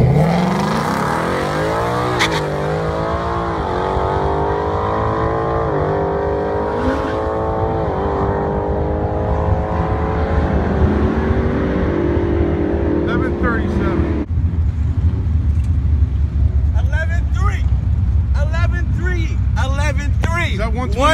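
Ford Mustang GT's 5.0-litre V8 launching hard down a drag strip. The engine note climbs, drops at each upshift, and climbs again about five times as the car pulls away, then fades out about fourteen seconds in. A low rumble follows, with voices near the end.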